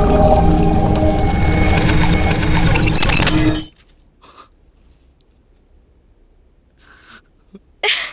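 Dense film background music cutting off abruptly about three and a half seconds in. Then near quiet, with faint high cricket chirps repeating a little under twice a second, and a short loud hit just before the end.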